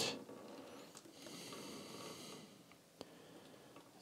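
Near-quiet workshop room tone with a faint breath through the nose lasting about a second, and a single small click about three seconds in.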